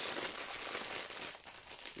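Clear plastic wrapping crinkling as a diamond-painting canvas is handled, growing fainter in the second half.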